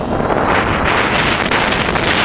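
Wind buffeting the microphone of a GoPro carried on a flying octocopter. The rush grows louder about half a second in and drowns out the thin whine of the electric motors and propellers.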